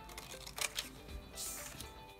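Soft background music, with a couple of scissor snips and a brief rustle as scissors cut through a sheet of copybook paper.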